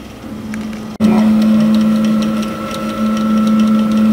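A 3D printer at work: its motors hum on one steady tone, with faint light ticking. The hum is much louder and closer from about a second in.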